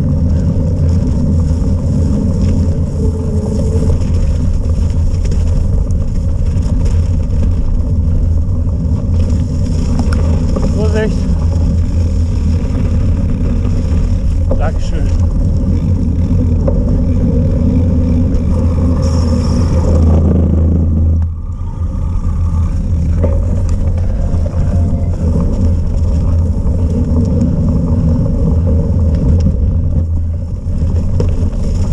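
Wind buffeting a bike-mounted action camera's microphone as a cyclocross bike is ridden along a wet, slushy course, a steady low roar mixed with the bike's rolling noise. The roar dips briefly about two-thirds of the way through.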